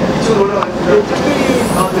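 Voices talking over a steady background hum while a Jeep Renegade's manual tailgate is lifted open by hand.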